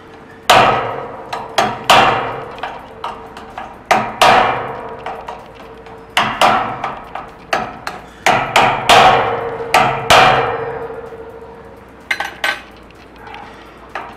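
Repeated sharp metallic blows against a door lock's magnetic cylinder protector as it is forced with a tool in a break-in attempt. Each hit rings out briefly; they come in irregular clusters for about ten seconds, followed by two lighter clicks near the end.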